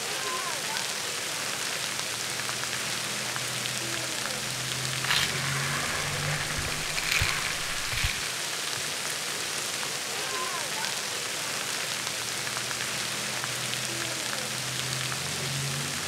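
Fine water mist spraying from splash-pad misting nozzles, a steady rain-like hiss, with a few brief knocks around the middle.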